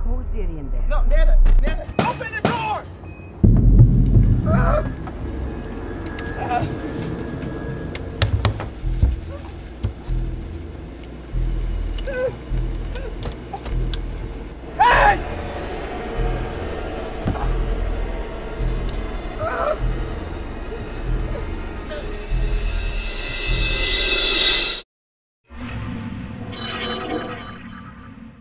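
Horror film soundtrack: a tense score over a steady low drone, with a man's cries and groans, building to a rising hiss that cuts off suddenly near the end.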